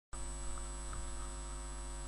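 Steady electrical hum picked up by the recording setup, with a thin high-pitched whine above it.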